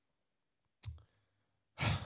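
A man's breath into a close microphone: a loud, breathy inhale or sigh near the end, just before he speaks. There is a brief click-like mouth sound about a second in, and dead silence in between.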